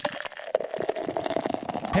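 Fizzing liquid: a dense run of fine crackles over a soft hiss.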